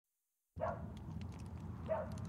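Two short, pitched animal calls about a second and a half apart, over a steady low rumble that starts abruptly after half a second of silence.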